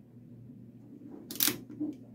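A single sharp plastic click about one and a half seconds in, from handling a Fluke 107 multimeter as its test leads are plugged in, against faint room tone.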